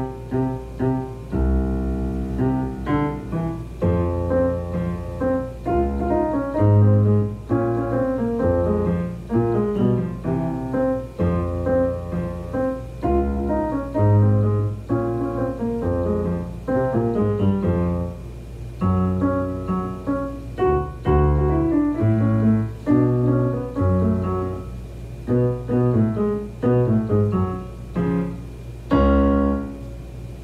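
Solo piano music played on a digital keyboard with a piano voice: a melody in quick notes over a low bass line and chords, continuing without a break.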